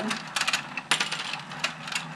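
Battery-operated Let's Go Fishin' toy game clicking and clattering: the motor-driven plastic pond turning and the plastic fish's mouths snapping open and shut, with rod tips tapping the fish. The clicks are sharp and irregular, several a second.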